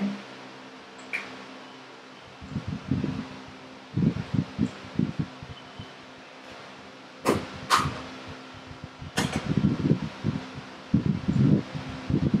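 Electric fans running with a steady hum and uneven low rumbling pulses, with three sharp clicks a little past halfway.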